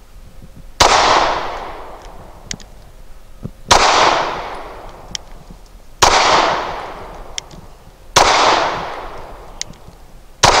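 HK P30SK 9mm pistol firing four slow, aimed shots about two to three seconds apart, each crack followed by a long echoing decay.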